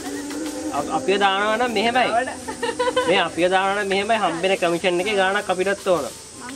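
Singing with a strong wavering vibrato over steady held accompanying notes, a melody of several phrases, with a faint steady hiss underneath.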